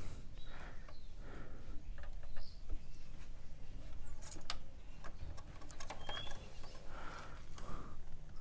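Scattered faint clicks and knocks of metal on metal as a stuck cylinder block is worked loose by hand on a Yamaha 125Z two-stroke engine.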